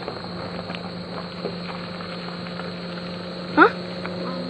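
A steady low hum under faint background hiss, with a short questioning voice ('hah?') near the end.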